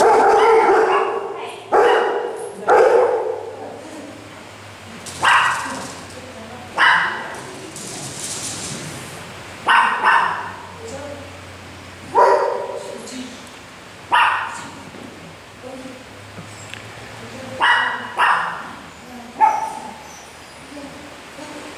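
Small dog barking in sharp single yaps every second or two as it runs, each bark echoing in a large hall.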